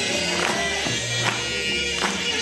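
Swing jazz music: horns held over a steady beat of sharp drum and cymbal hits.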